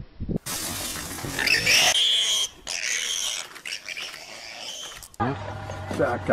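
Wild animal calls, harsh and noisy, starting about half a second in and cutting off suddenly about a second before the end.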